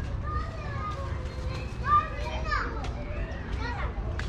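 Children's voices: short, high-pitched calls and shouts that bend up and down in pitch, the loudest about two seconds in, over a steady low rumble.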